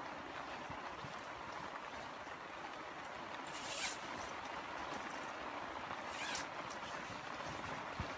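Steady hiss of heavy rain, with the rustle of waterproof clothing and a wet carp sling being handled, including two brief swishes about four and six seconds in.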